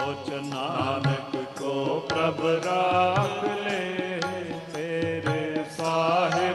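Sikh shabad kirtan: men singing a drawn-out, bending melodic line over the sustained reeds of two harmoniums, with steady tabla strokes keeping the rhythm.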